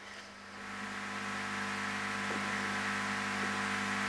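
Steady electrical hum with overtones under a rushing noise that swells from about half a second in, on a remote outdoor interview's audio line; the interviewee puts the noise and breakup on the line down to strong wind.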